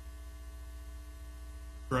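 Steady electrical mains hum on the meeting-room audio feed, a low drone with faint thin overtones above it, until a man's voice starts right at the end.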